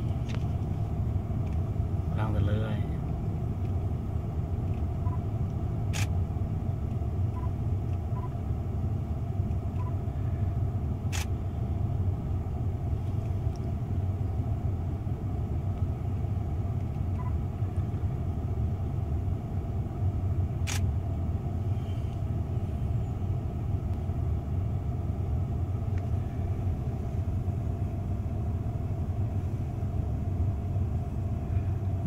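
A vehicle engine running with a steady low rumble, with a few sharp clicks scattered through it.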